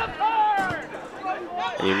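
Only speech: a sports commentator's voice talking, briefly pausing and starting again near the end.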